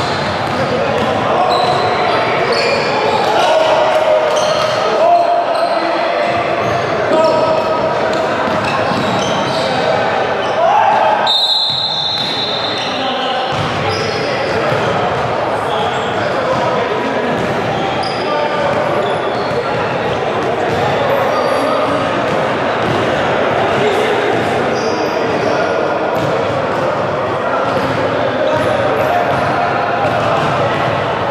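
Basketball bouncing on a gym's hardwood floor during play, among many overlapping voices of players and onlookers, echoing in a large hall.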